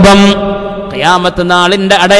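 A man's voice chanting Qur'an recitation, holding long, steady notes with a rise in pitch about halfway through.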